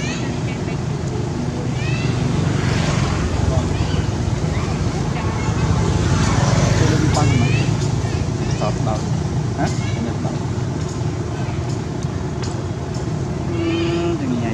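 Indistinct background voices over a steady low hum, with short high chirps every few seconds.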